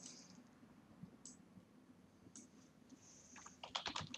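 Faint computer keyboard and mouse clicks: a few isolated clicks, then a quick run of keystrokes near the end as a word is typed.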